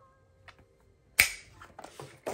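Metal ring mechanism of an A5 ring agenda snapping, one loud sharp click about a second in, followed by a few lighter clicks and the rustle of paper inserts being handled.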